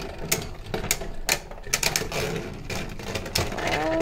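Two Beyblade spinning tops whirring against each other in a plastic stadium, with rapid, irregular clicks each time they strike.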